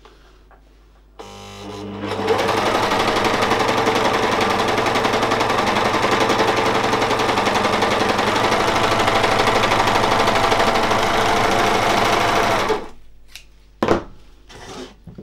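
Gritzner overlock machine starting about a second in, running up to speed and sewing steadily with its cutting knife engaged, trimming the fabric edge as it stitches, then stopping about a second before the end. A single sharp click follows just before the end.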